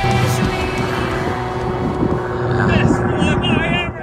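Zivko Edge 540 aerobatic plane's piston engine droning steadily as it flies by, with a person's voice near the end.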